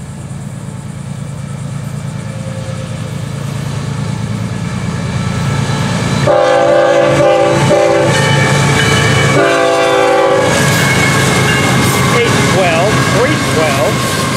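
Freight train led by Florida East Coast GE ES44C4 diesel locomotives approaching, its engines growing steadily louder. The lead locomotive's air horn then sounds two salute blasts, one about six seconds in and a second about nine and a half seconds in. The engines and rolling train stay loud as it passes.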